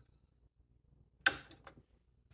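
A single sharp click about a second and a quarter in, followed by a couple of faint ticks, from the ATV's ignition key and hanging keyring being handled; otherwise near quiet.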